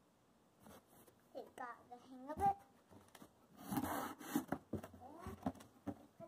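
A child's quiet voice in short sounds, with a scraping rustle of cardboard a little past halfway as she climbs into a large cardboard box.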